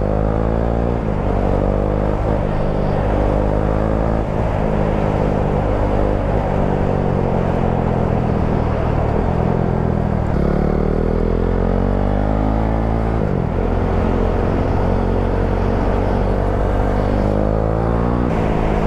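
Husqvarna 401's single-cylinder engine pulling under way, its pitch rising as the bike accelerates and falling back between accelerations, with a strong climb about ten seconds in.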